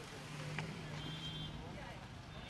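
A car's engine running low and steady as it drives slowly past, with indistinct voices in the background and a sharp click about half a second in.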